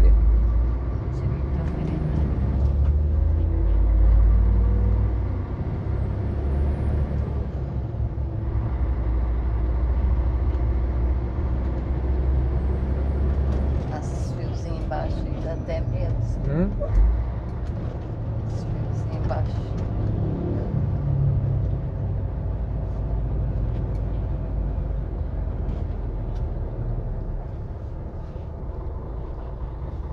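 Heavy truck engine running in the cab at low city speed: a deep, steady rumble that eases about halfway through, with scattered rattles and clicks.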